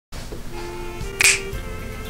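A single sharp finger snap about a second in, over soft background music.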